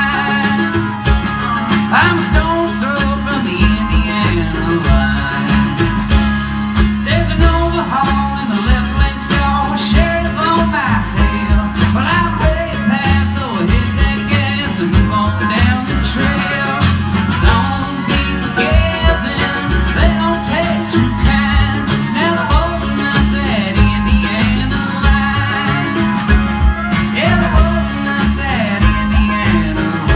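Live bluegrass string band playing a tune, with acoustic guitar, banjo and upright bass plucking steadily.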